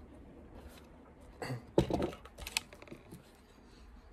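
A few light clicks and knocks, bunched together about a second and a half in, from things being handled on a countertop.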